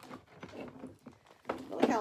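Clear plastic bag crinkling and rustling as it is handled, with scattered small clicks. A woman starts speaking near the end.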